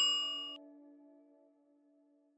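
A single bell-like chime ringing out and fading. Its high tones die away within about half a second and its lower tones by about a second in. It is the cue to pause the video and think of an answer.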